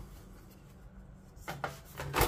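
Quiet handling of a metal tin of coloured pencils: faint rubbing as a foam sheet is laid over the pencils, then a few brief handling noises near the end as the tin's lid is brought over it.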